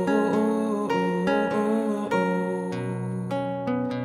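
Acoustic guitar plucking a series of notes under a hummed vocal melody, the audience's sung part of the song.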